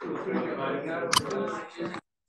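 Indistinct chatter of several people talking in a room, with one sharp click a little past halfway; the sound cuts off suddenly at the end.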